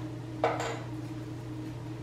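A single short click about half a second in, from handling things at a table, over a steady low hum.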